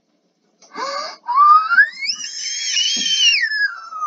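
A child's long, high-pitched squeal: the voice slides up steeply about a second in, holds high, then glides back down near the end.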